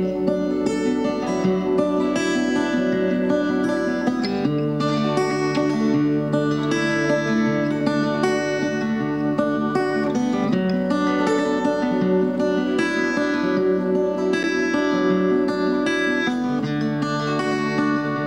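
Acoustic guitar played fingerstyle: a steady run of plucked arpeggio notes over chords, with the bass note changing every few seconds as the chords change.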